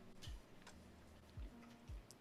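Near silence with faint ticks and soft low thumps that drop in pitch, coming in pairs.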